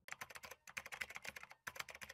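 Computer keyboard typing sound effect: quiet, rapid key clicks in three quick runs with short pauses between them, played as the end-card text is typed onto the screen.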